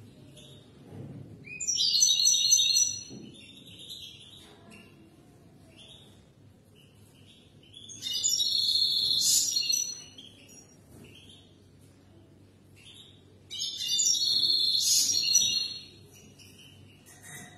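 European goldfinch singing: three bursts of rapid, high song, each about two seconds long, with faint short notes in the pauses between them.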